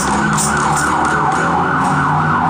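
A siren wailing up and down about twice a second, loud and unbroken, over a busker's strummed stringed instrument.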